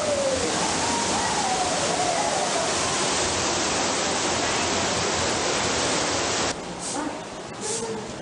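Steady rushing of water from an artificial waterfall in a cave walkway, a loud even hiss that stops suddenly about six and a half seconds in, with faint voices over it.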